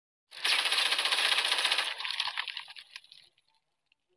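Logo-intro sound effect: a loud burst of fast, dense clicking that starts a moment in and dies away over about three seconds.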